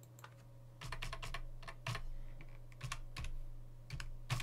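Computer keyboard typing: irregular key clicks that start just under a second in, over a faint low steady hum.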